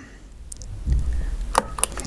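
A few short, sharp clicks and a low handling rumble from hands working the controls of a small homemade transistor tester. The clicks bunch together near the end.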